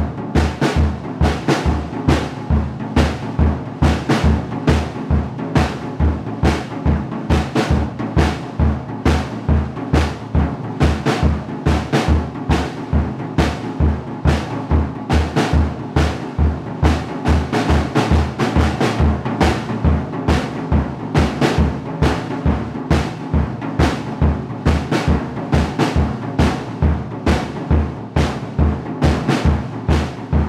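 Acoustic drum kit played in a steady, unbroken groove: bass drum about twice a second under quicker snare and cymbal strokes.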